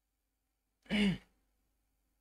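A man's single short wordless vocal sound about a second in, a brief voiced breath that falls in pitch.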